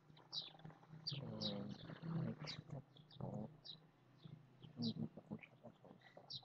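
A small bird chirping repeatedly in the background, short high chirps coming irregularly about two a second, over a steady low hum.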